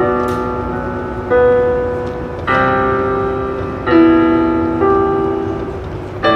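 Piano playing slow, sustained chords: a new chord is struck about every second or so and left to ring and fade before the next.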